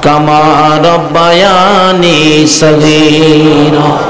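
A man's voice chanting in a melodic, sing-song manner, holding long notes that slide and waver in pitch, with short breaks about a second in and again past the middle.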